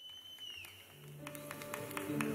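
Quiet start of live band music: a high tone held for about half a second that then bends downward, followed by a low held note and a few light clicks as the playing begins.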